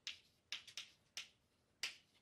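Chalk writing on a blackboard: about six short, faint taps and clicks at uneven spacing as the strokes are made.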